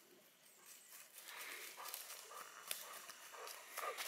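Faint rustling and crunching of a Weimaraner's paws trotting over dry leaf litter and twigs, with a few light clicks.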